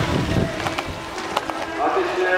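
BMX race track sound: low wind rumble on the microphone, then a few sharp clicks as the riders' bikes roll along the track. A voice starts up near the end.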